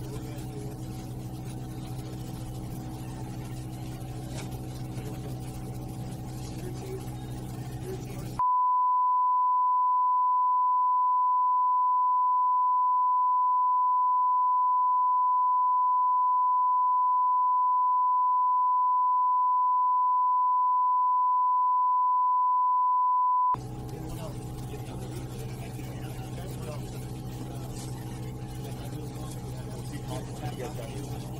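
A single steady, high-pitched censor beep cuts in suddenly about eight seconds in and holds for about fifteen seconds before cutting off. It replaces all other sound, the mark of redacted audio in released body-camera footage. Before and after the beep, a steady low hum runs with faint background noise.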